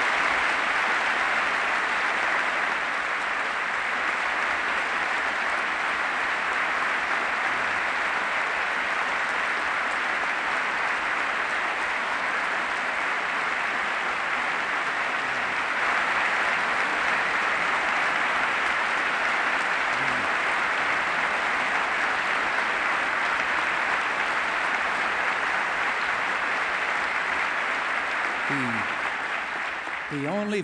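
Large audience applauding steadily for about half a minute, tailing off at the very end.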